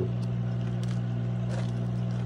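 Steady low electrical hum of a turtle tank's water filter pump running.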